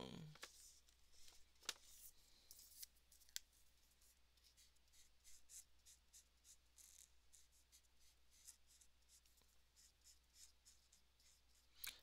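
Faint scratching of a marker nib stroking across paper as skin tone is coloured in, in short repeated strokes, with a few light clicks in the first few seconds.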